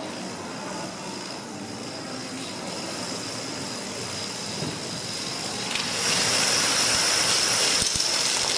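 Dominoes toppling in a continuous clatter, growing louder and brighter about six seconds in.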